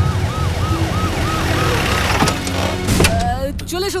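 Emergency-vehicle siren giving a quick, repeating rise-and-fall whoop about three times a second over a steady low rumble; it stops a little after two seconds in. A sharp hit comes near the end.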